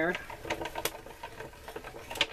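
Hand-crank Cuttlebug die-cutting machine being cranked, a fabric-and-die sandwich feeding through its rollers: a run of small, irregular mechanical clicks.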